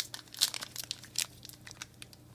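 Foil trading-card pack wrapper crinkling and tearing as it is handled and opened, in a string of sharp crackles, the loudest right at the start and again about half a second and just over a second in.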